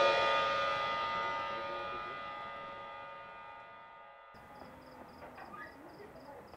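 A dramatic musical sting: a sudden ringing chord of many tones that dies away slowly over about four seconds, then cuts off. After the cut, faint chirping of night insects, evenly repeated.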